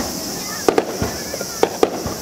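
Fireworks shells bursting. There is a dull low boom at the start and another about halfway through, with sharp cracks coming in pairs between them and again near the end.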